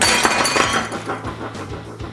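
A glass martini glass, crazed with cracks from liquid nitrogen, breaking. A sharp crash at the very start is followed by about a second of crackling, tinkling glass that fades away, with background music underneath.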